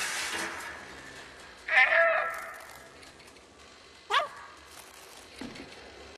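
A cat meowing twice: a longer call about two seconds in, and a short, sliding one near the four-second mark.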